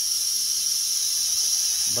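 A small electric motor and gear drive turning a lead screw to raise a model hauler's ramp slowly. It gives a steady, high-pitched whine with no breaks.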